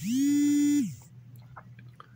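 A person's voice holding one steady, drawn-out note for just under a second, sliding up into it and down out of it, like a sustained hesitation sound between phrases.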